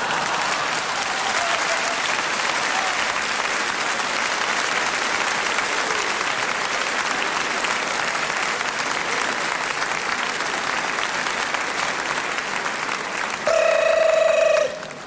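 Large indoor audience applauding steadily with sustained clapping. Near the end a short held musical note cuts in over it.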